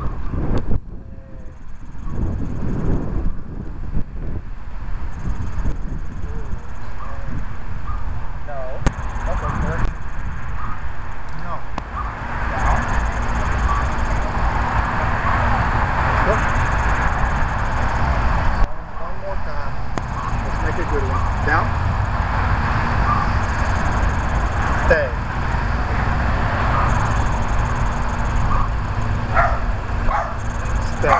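Outdoor ambience dominated by a fluctuating low rumble of wind on the microphone, with indistinct distant voices.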